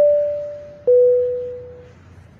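Two-note airliner cabin chime: a higher tone ringing and fading, then a lower tone struck about a second in and fading likewise. It is the signal for an announcement from the flight deck.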